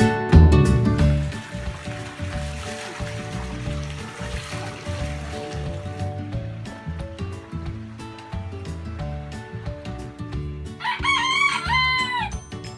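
Background music with plucked guitar. Near the end a rooster crows once over it, a call of just over a second.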